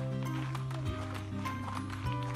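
Background music: sustained chords over a held bass note that changes about a second in, with a light regular beat.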